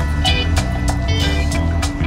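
Background music with a steady beat over sustained low notes.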